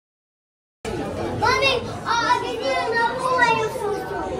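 A young child's high-pitched voice chattering and exclaiming excitedly, starting suddenly about a second in, over a low steady hum of a busy indoor space.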